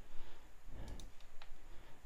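A handful of faint, sparse clicks from a computer mouse and keyboard over quiet room tone.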